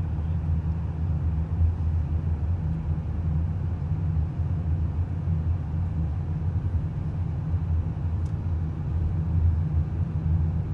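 Steady low rumble of a car driving along a street, with no distinct events.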